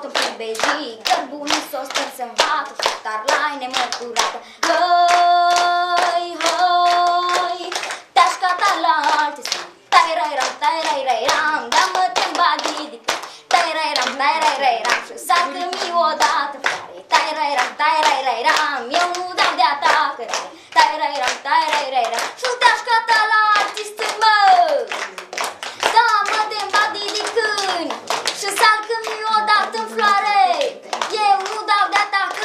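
A young girl singing a Romanian folk song in a lively, chant-like style, with listeners clapping steadily in time. She holds a long note about five seconds in.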